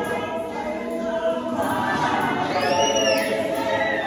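Women's church choir singing a gospel song in harmony, unaccompanied. A high note slides up and back down about three seconds in.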